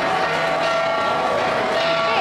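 Hand-held flat bronze gongs (gangsa) ringing, several held tones that overlap and carry on without a break, over crowd noise.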